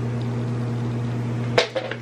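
Steady low hum, as from a running appliance or fan, with a single sharp click near the end.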